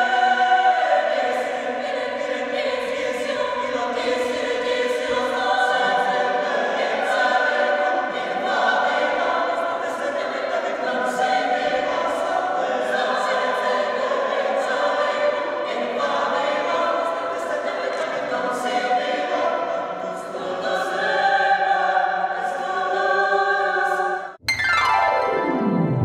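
Mixed choir of women's and men's voices singing in several parts, holding long notes and moving through chords.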